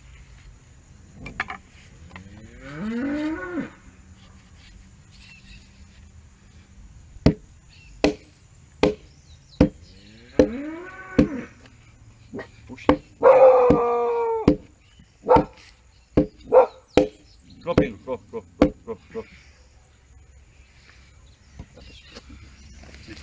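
Sharp wooden knocks, well over a dozen at an uneven pace, as a log-head stake mallet is knocked against a log to seat its new improvised wooden handle. Cattle moo three times in between, the loudest call about 13 seconds in.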